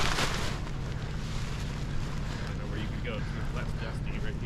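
Wind rumbling steadily on the microphone, with a brief rustle of the bundled nylon paraglider wing at the start and faint voices in the background.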